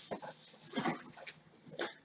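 A pause with a few faint, short voice sounds from a person, such as breaths or a murmur, near the start, just before one second in and near the end.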